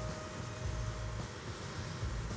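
Quiet outdoor background with a steady low rumble of distant road traffic.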